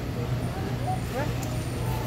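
Steady low hum of a store's indoor background noise, with faint voices talking in the background around the middle.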